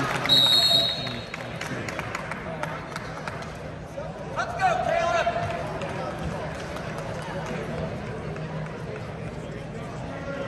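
A short, high referee's whistle blast about half a second in, then arena hubbub with a single voice calling out about four and a half seconds in.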